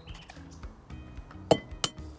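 An egg tapped twice against the rim of a glass bowl to crack it: two sharp clinks about a third of a second apart, the first the louder. Soft background music plays underneath.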